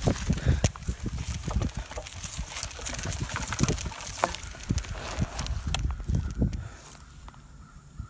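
Mountain bike rolling over a rough, grassy trail: irregular clicks, rattles and knocks over a low rumble. It goes quieter about seven seconds in.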